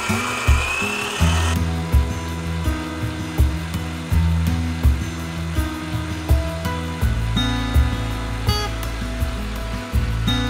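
Background music with a steady beat. Over the first second or so, the whine of an electric stand mixer's motor rises as it spins up, whisking eggs and sugar.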